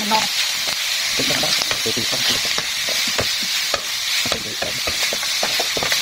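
Eel pieces, chili and greens sizzling in a hot metal pan, stir-fried with a metal ladle: a steady sizzle under frequent short scrapes and knocks of the ladle against the pan.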